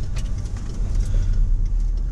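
Steady low rumble of a car heard from inside the cabin, with a few faint light clicks.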